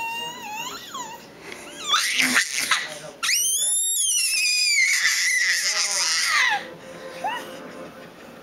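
A crawling baby's high-pitched sing-song vocalising, her "singing": short wavering calls, then loud squeals, then from about three seconds in a long, loud squeal that slides down in pitch and breaks off sharply.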